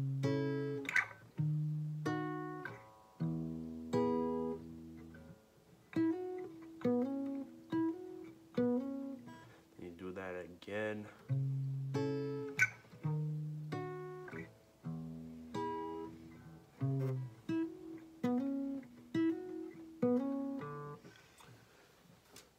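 Fender acoustic guitar picked with the fingers, playing a melodic riff of single notes and small chords that each ring out and fade, a guitar line written for electric guitar and played here on acoustic. The phrase plays through about twice.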